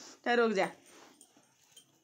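One short hummed 'hmm' from a voice, falling in pitch, about a quarter second in, followed by faint rustling of clothing as the baby is handled.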